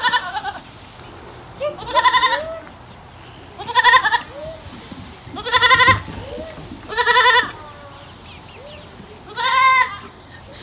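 A goat bleating over and over: about six wavering bleats, one every second or two.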